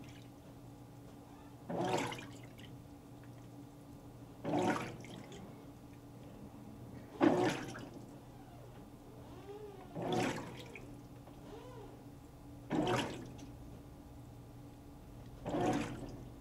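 Hotpoint HTW240ASKWS top-load washer in its wash agitation phase: the water in the tub swishes in six even surges, one every three seconds or so as the agitator strokes, over a steady low hum from the motor.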